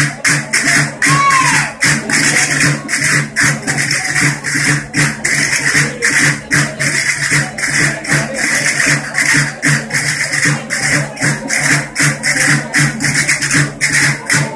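Asturian bagpipe (gaita) and drum playing a dance tune: a steady drone under the chanter's melody, with sharp, even beats about three a second.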